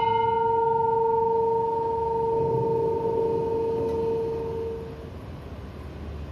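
A bell struck once at the very start, its clear tone ringing on and slowly fading away about five seconds in, heard through the hall's speakers.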